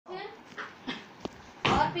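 Short, quiet snatches of a voice with a single click about a second in, then a louder voice starting near the end.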